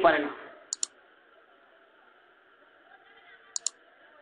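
A man's voice ends a phrase, then a pause with faint steady background hiss, broken twice by a quick, sharp double click, about three seconds apart.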